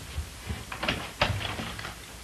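Footsteps crossing a room, then the click and rattle of a door being opened by its knob; the loudest knock comes a little over a second in.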